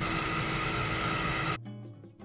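Keurig single-serve coffee maker brewing into a glass jar: a steady pump hum with hiss. It cuts off suddenly about a second and a half in, leaving quieter background music.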